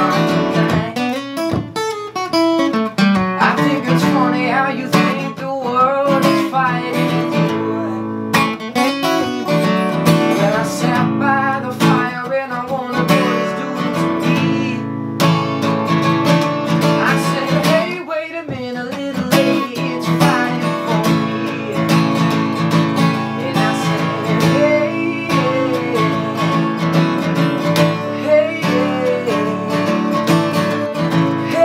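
A man singing live to his own acoustic guitar, which he strums and picks steadily while sung lines come and go over it.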